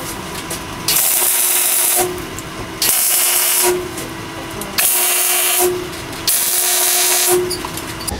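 Electric arc welder laying four short welds on steel tubing, each a burst of about a second of hissing crackle. A steady hum runs underneath between the welds.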